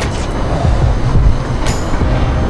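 Loud, gusty wind rumbling against the microphone, under a faint music bed.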